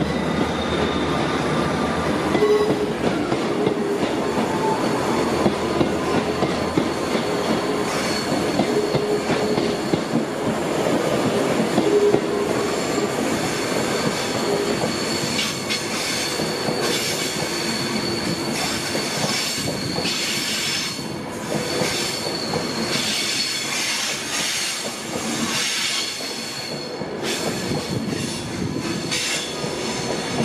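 Passenger trains moving slowly along a platform: a Northern Sprinter diesel unit pulls out and an Avanti West Coast train rolls in. The wheels squeal in a steady high tone through most of it and click over rail joints.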